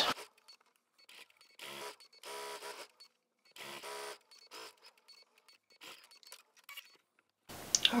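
Domestic sewing machine stitching a seam in three short runs of under a second each, followed by a few faint clicks.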